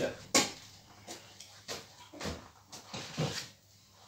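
Handling noise: a man moving about and picking things up, giving several scattered knocks and clunks. The sharpest knock comes about a third of a second in.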